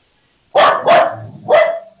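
A dog barking three times in quick succession, sharp loud barks about half a second apart.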